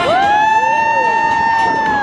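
A woman's high voice holding one long sung note, sliding up into it at the start and falling away at the end, as the close of a song in a live street dance show.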